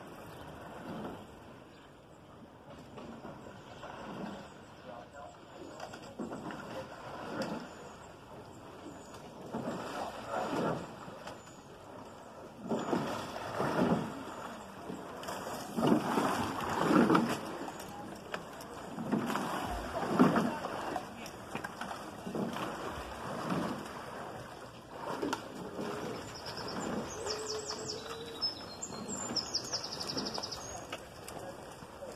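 Rowing eight passing close below, its strokes sounding as a regular rhythm about every second and a half, loudest as the boat passes underneath, then fading. A voice calls along with the strokes.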